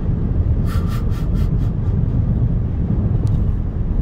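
Steady low road rumble inside the cabin of a Ford Mustang Mach-E GT Performance, an electric car, at highway speed. With no engine running, the sound is tyre and road noise as the car slows from about 85 to 74 mph.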